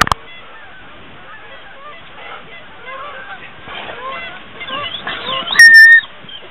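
A flock of geese honking, many overlapping calls growing louder over the last few seconds. There is a sharp click at the very start, and near the end a loud, steady high-pitched tone cuts in briefly.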